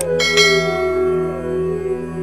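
A sharp click, then a bright bell chime struck a moment later that rings on and slowly fades. Underneath, calm Indian flute music continues over a steady drone.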